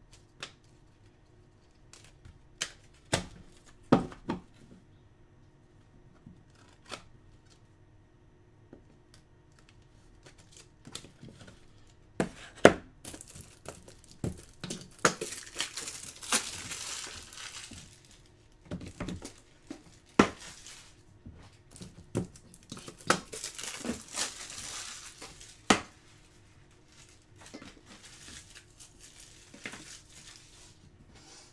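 Trading-card packaging being handled: scattered clicks and taps for the first dozen seconds, then two stretches of tearing and crinkling wrapper, one around the middle and one about two-thirds of the way through.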